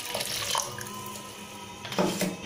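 Liquid poured from a steel vessel into a stainless steel pot, splashing onto the chopped tomatoes inside. The pour is loudest in the first half-second, then tapers off.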